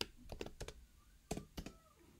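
Typing on a computer keyboard: a quick run of keystrokes, a short pause, then two more keystrokes.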